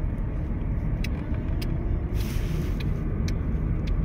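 Steady low rumble of a car's engine and tyres heard from inside the cabin while driving, with a few light clicks and a brief hiss about two seconds in.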